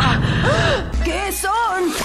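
Short voiced gasps and wordless exclamations from animated characters, several brief rising-and-falling cries one after another, with a low steady hum underneath from about a second in.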